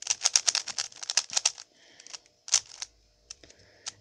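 A plastic 3x3 Rubik's cube turned quickly by hand, its layers clacking in a fast run of clicks for about a second and a half, then a few single clicks.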